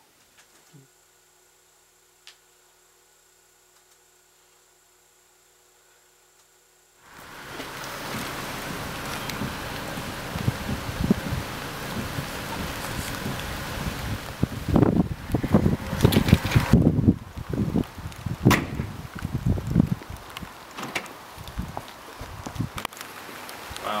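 Near silence with a faint steady hum for about seven seconds, then a sudden cut to a loud, noisy background full of scattered knocks, with several louder bursts in the middle stretch.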